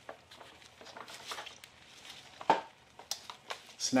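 Small clicks and handling noises as a spark tester's lead is pushed onto a trimmer's spark plug, with one sharper click about two and a half seconds in and a few lighter clicks after it.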